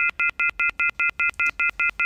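Rapid electronic beeping sound effect: the same high chord of tones pulsed about seven times a second, evenly, with no change in pitch.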